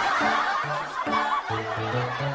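Laughter over background music with short low notes repeated in a bouncy rhythm.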